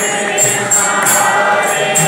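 Kirtan: a group singing a devotional chant together, with small hand cymbals (karatalas) struck in a steady beat about three times a second.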